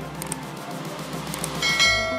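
Subscribe-button animation sound effects: a few sharp mouse-click sounds, then a bright bell chime that rings out near the end, over background music.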